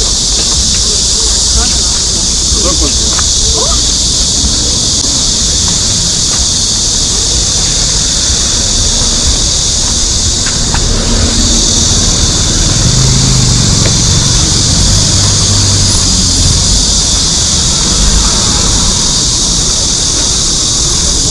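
A steady, loud high-pitched chorus of cicadas, over low street rumble and faint voices of passers-by.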